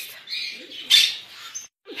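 A shop full of caged birds, parrots among them, chattering and squawking, with one loud squawk about a second in. The sound breaks off briefly near the end.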